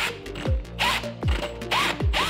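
Cordless drill driving a 3.5-inch Lenox bi-metal hole saw into the wall, heard as two short rasping cutting bursts over background music with a steady beat.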